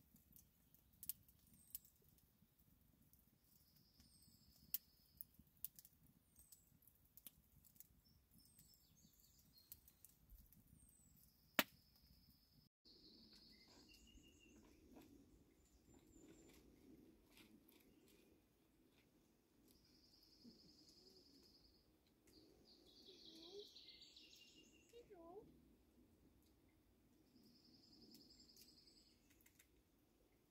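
Faint crackling of a wood campfire, with scattered sharp snaps and birds calling now and then. About halfway through the sound cuts to faint bird calls over a low, steady hum.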